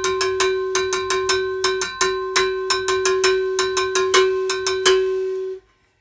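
Cowbell struck with a drumstick in a syncopated timba marcha arriba bell pattern, each hit ringing on a steady pitch. The strokes stop about five seconds in and the ringing is cut off shortly after.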